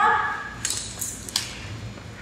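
A few light clicks and clinks of small objects being handled, three or four short ones near the middle.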